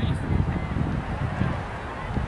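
Wind buffeting the microphone as an uneven low rumble, with faint distant voices across the playing fields.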